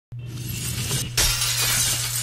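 Intro sound effect of shattering, crystalline glass over music. It starts abruptly and swells louder about a second in, over a steady low hum.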